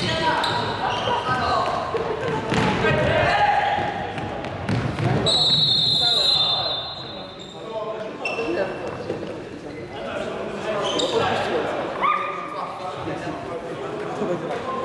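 Futsal being played in an echoing sports hall: players calling out, and the ball being kicked and bouncing on the wooden floor. A referee's whistle sounds once, held for over a second, about five seconds in.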